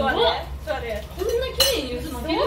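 Forks and plates clinking on a table, with one sharp clink about one and a half seconds in, over voices.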